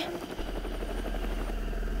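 Helicopter running: steady rotor chop over a low rumble that comes in a fraction of a second in.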